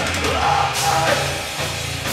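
Live rock band playing loud through a club PA: distorted electric guitar, bass guitar and drum kit, with a singer's voice over them.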